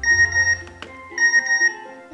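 Mobile phone's incoming text-message alert: two short bursts of high electronic beeping, about a second apart, the sign of an SMS reply arriving. Background music runs underneath.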